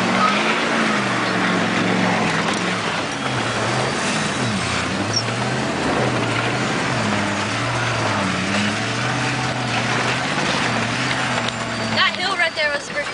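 4x4 truck engine heard from inside the cab while driving through mud, its note rising and falling several times as the throttle is worked. Under it runs a steady wash of tyre and water noise.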